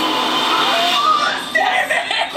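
People's voices over background music, the voices becoming clearer about a second and a half in.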